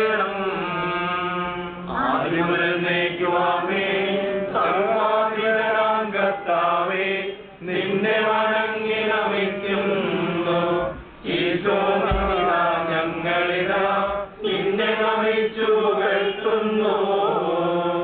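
Christian funeral prayers chanted in a sung recitation, in long phrases with brief pauses between them, over a steady low tone.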